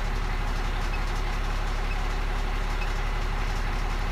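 A Cummins diesel truck engine idling steadily, heard from inside the cab as an even low hum.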